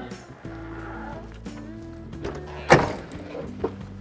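Background music throughout. About two-thirds of the way in comes one loud clunk, then a smaller knock, as the caravan's heavy fold-down bed-floor panel is unlatched and lowered into place.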